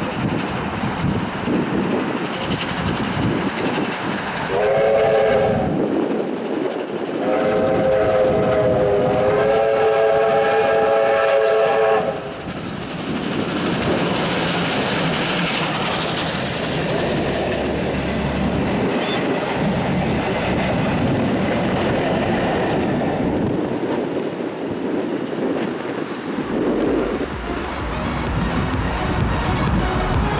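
Victorian Railways R-class 4-6-4 steam locomotive R707 approaching and passing at close range. It sounds its whistle in a short blast about five seconds in, then a longer blast. The steady rumble and wheel clatter of the locomotive and its train going by follows.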